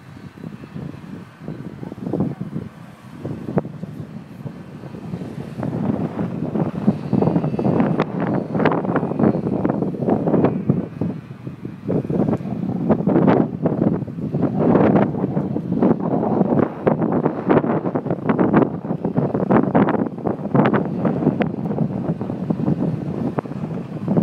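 Strong gusty wind buffeting the microphone in uneven rushes. It grows louder from about six seconds in.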